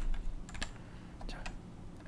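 A few keystrokes on a computer keyboard, short separate clicks.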